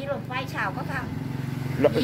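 A vehicle engine running steadily nearby, a low hum rising slightly in pitch, under a woman's talk.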